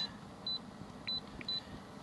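Launch CReader Professional CRP123 OBD2 scan tool giving three short, high key beeps as its down button is pressed to scroll through the datastream list, over the faint low hum of the running engine.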